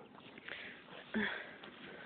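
A horse sniffing and blowing faintly at close range, nosing for a treat, with a woman's short "uh" a little over a second in.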